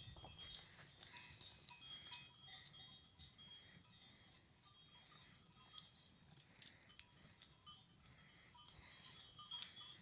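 Bells on a grazing goat herd clinking faintly and irregularly, many small high rings overlapping.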